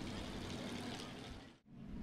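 Faint, steady engine rumble of dirt-track Hobby Stock race cars running slowly around the oval under caution. The sound drops out briefly about a second and a half in.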